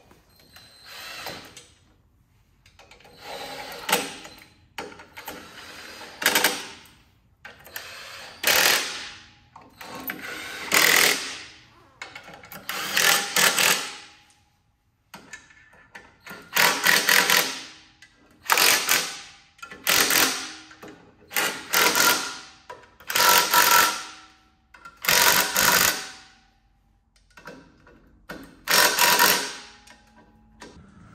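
Cordless impact wrench running bolts on the clutch pressure plate of an air-cooled VW Beetle engine, in about a dozen short bursts with pauses between as it moves from bolt to bolt.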